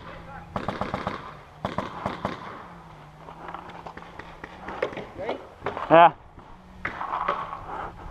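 Paintball markers firing in rapid volleys of sharp pops, two quick bursts in the first couple of seconds, then scattered single shots.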